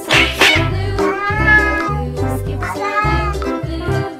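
Cat meowing: two long, arching meows over background music with a steady beat, after a brief harsh noise right at the start.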